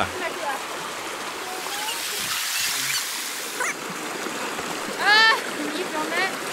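A shallow, rocky creek rushing over boulders in a steady hiss. About five seconds in, a person gives one short, high-pitched call.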